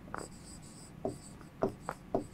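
Pen writing on a board: a light squeaky stroke, then a few short quick strokes and taps as letters are formed.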